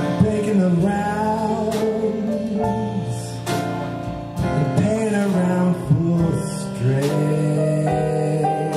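A man singing a slow ballad into a microphone in a crooning style, over piano accompaniment, in phrases with short gaps where the piano carries on alone.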